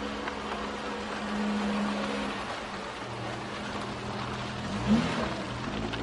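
A motor engine running steadily, with a brief rise and fall in pitch about five seconds in.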